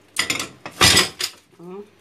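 Dishes and kitchen utensils clattering: two brief rattling clatters, the second louder and longer.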